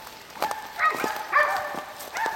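Two high, held, wolf-like howls in the second half.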